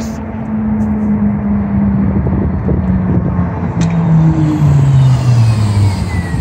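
Hybrid city bus approaching and driving past: a steady drive noise with a low hum that slowly falls in pitch, and a faint higher whine that also falls over the last few seconds as the bus comes alongside.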